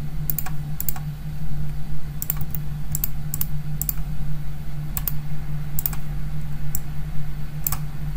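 About ten clicks from a computer mouse and keyboard at uneven intervals, over a steady low hum.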